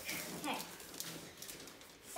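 A single short spoken word ("okay"), then quiet room noise with a couple of faint clicks.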